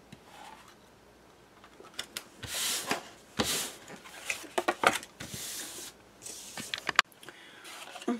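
Chipboard and paper sliding and rubbing on a craft table as they are pushed into place, with several short rasps and a few light taps.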